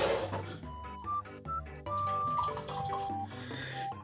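Background music with held synth notes, and over it the fizzing splash of a carbonated energy drink being poured from a can into a glass, loudest near the start and fading.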